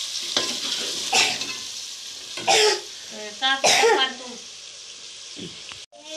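Potato curry frying in an aluminium pot on a gas stove, hissing steadily as a steel ladle stirs it. Two short, louder vocal bursts, like coughs, break in around the middle.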